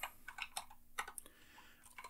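Computer keyboard keystrokes: a quiet run of irregular key clicks as a terminal command is typed, with a short pause a little past the middle.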